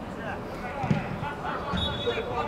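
Football players calling out across the pitch, with dull thuds of the ball being kicked, one about a second in and another near the end.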